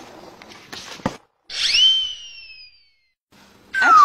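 Whistle sound effect in two pitches at once, swooping up and then sliding slowly down for about a second, between brief cuts to silence. Near the end a lower tone glides steeply down.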